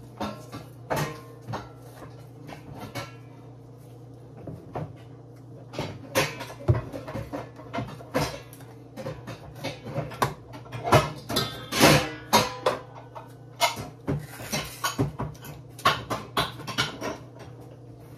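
Clicks and knocks of a jar of mayonnaise being handled and opened at the kitchen counter, a few at first and then busy and irregular for most of the second half, over a steady low hum.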